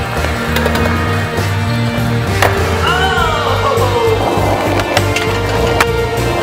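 Background music over skateboard wheels rolling on a hard floor, with a couple of sharp clacks, the clearest about two and a half seconds in.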